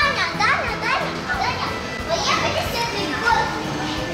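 Children's voices at play, a string of high shouts and squeals with quickly rising pitch, over background music.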